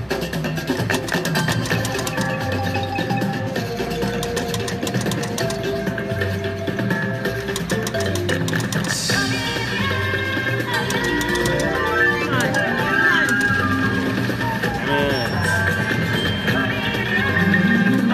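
Kilimanjaro video slot machine playing its bonus free-spin music, a rhythmic loop of chiming, mallet-like tones and drum beats as the reels spin and stop. Near the end a rising run of tones sounds as a small win is credited.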